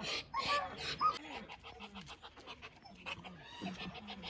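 Muscovy ducks huffing and hissing in quick breathy puffs, with a few short, low falling notes.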